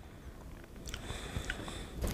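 Quiet mouth sounds of a person eating a spoonful of soft mousse: faint smacking, with a few small clicks in the second half.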